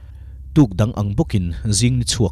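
Narration in Mizo: a voice speaking over the footage, starting about half a second in after a short pause, with a low steady hum underneath.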